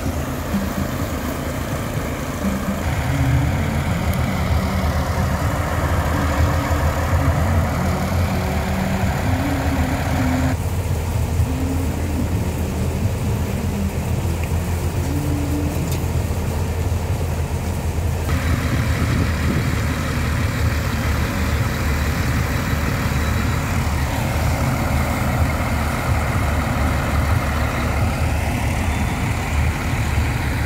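Steady low engine drone, with a rushing hiss over it that shifts abruptly several times.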